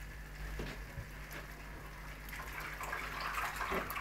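Faint kitchen background: a steady low hum under a light watery hiss, with a couple of soft knocks about half a second and a second in.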